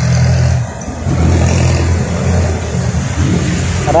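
A motor vehicle's engine running close by: a steady low drone that dips briefly about half a second in, then carries on.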